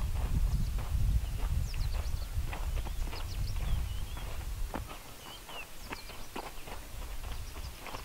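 Footsteps crunching irregularly on a loose, stony dirt track. Wind noise on the microphone for the first five seconds or so, then dropping away.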